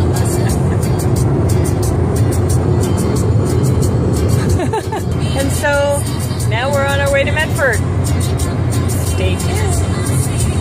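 Steady road and engine rumble inside a moving car's cabin, with music playing. Around the middle, a voice holds a few sung notes over it.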